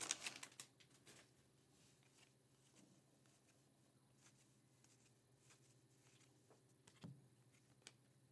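Near silence, with faint, scattered ticks of Topps Heritage baseball cards being slid from the front to the back of the stack by hand. The opened foil pack wrapper rustles briefly at the very start.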